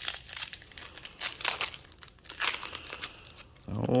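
Foil wrapper of a Topps Chrome trading-card pack crinkling in irregular crackles as it is torn open and peeled off the cards.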